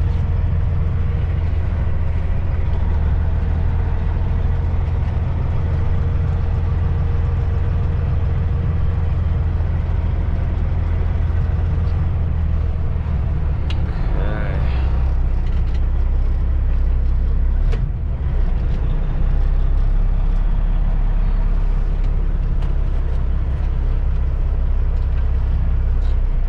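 Heavy truck's diesel engine running at low speed while the truck creeps forward, heard from inside the cab as a steady low drone. Its note shifts about halfway through, and a single sharp click comes a little later.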